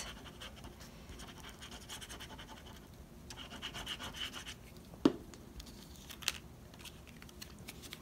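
The tip of a liquid glue bottle scratching and rubbing across a paper die-cut as glue is spread over its back. A sharp click comes about five seconds in, and a lighter one a little later.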